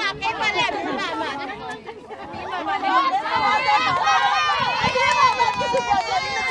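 Several voices talking and calling over one another close by, growing louder about halfway through.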